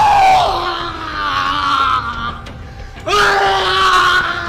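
A man screaming in two long, drawn-out cries: the first falls slowly in pitch and fades, the second starts about three seconds in.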